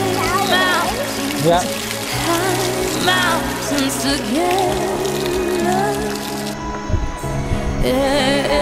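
Background song with a singing voice over an instrumental backing.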